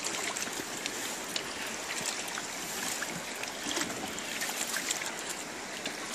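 Steady rush of river water flowing past and lapping against a boat's hull, with a few faint small knocks.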